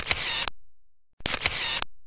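Photo-booth camera shutter sound effect, heard twice a little over a second apart. Each is a click, a short rush of noise and a second click, then a fade.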